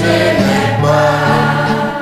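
A small church choir of mixed voices sings a French hymn, accompanied by a man on a nylon-string classical guitar.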